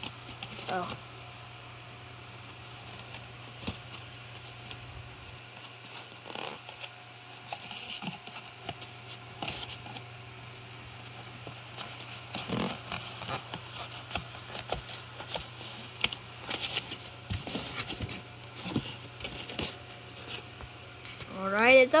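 Cardboard takeout box being handled and its flaps worked open: faint, scattered scrapes and rustles, busier in the second half, over a steady low hum.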